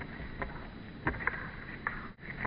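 A few scattered light footfalls on dry pine straw, over a low rumble of wind on the microphone.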